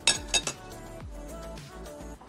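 Cutlery clinking twice against a plate in quick succession, sharp and bright, over background music with a steady beat.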